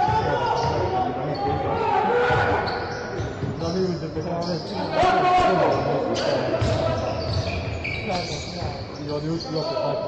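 Basketball dribbling and bouncing on a hardwood court amid squeaking sneakers during live play, with shouting voices, all echoing in a large indoor sports hall.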